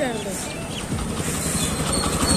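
Motorcycle engine running as the bike rides slowly closer, a low rumble with a fast, even beat that grows louder from about a second in.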